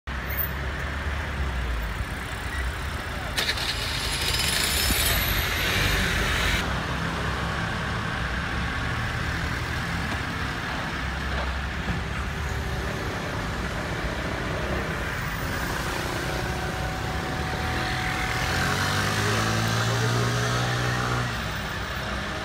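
Urban street traffic, cars and motor vehicles running by, with a loud hiss that cuts off sharply about six and a half seconds in. Near the end a vehicle engine runs louder for a few seconds.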